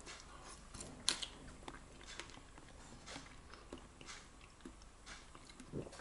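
A person chewing a mouthful of soft chicken and sweetcorn pie with a mashed potato topping. Faint wet mouth sounds with scattered small clicks, one sharper click about a second in.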